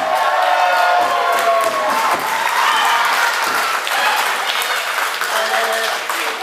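A small crowd clapping, with voices calling out over it in the first couple of seconds.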